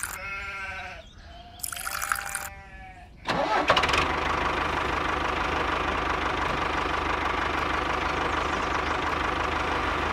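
Two bleats, each a wavering call of about a second, the second one about a second and a half in. About three seconds in, a small motor starts with a few clicks and then runs steadily.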